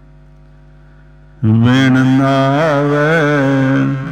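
A man chanting a verse of the Hukamnama in a long held note with a wavering pitch, starting about a second and a half in and fading just before the end, over a steady low drone.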